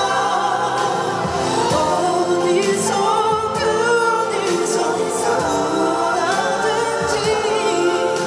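A male vocalist singing a Korean pop ballad live into a handheld microphone over instrumental accompaniment, amplified through the concert sound system, with vibrato on the held notes.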